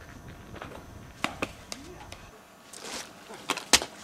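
A series of sharp, short knocks, the loudest near the end, with a brief rushing noise just before them.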